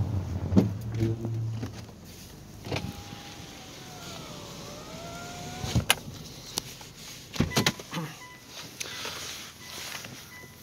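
A car door being worked: scattered sharp clicks and knocks, after a low hum in the first couple of seconds. In the middle a thin whine dips and rises in pitch.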